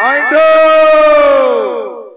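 A performer's loud, drawn-out vocal cry, held for about a second and a half and falling in pitch as it dies away.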